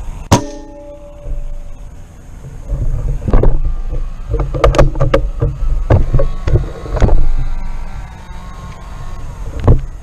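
A single shot from a Benjamin Kratos .25-calibre PCP air rifle just after the start, a sharp crack with a brief metallic ringing after it. From about three seconds in come irregular low rumbling and several loud knocks as the gun and camera are moved about.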